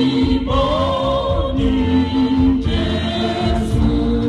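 Church choir singing a praise song into microphones, with long held notes that rise and fall in pitch.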